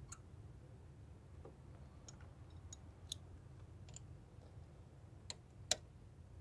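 Faint, irregular metallic clicks of a spark plug socket and extension turned by hand, threading a spark plug into the aluminium cylinder head of a 2012 Jeep Compass's 2.4 L engine. There are about seven clicks, the loudest near the end.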